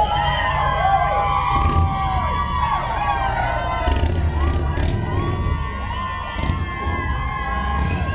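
A crowd cheering and screaming in many overlapping, rising and falling high cries, with a brass band playing low notes and drum underneath.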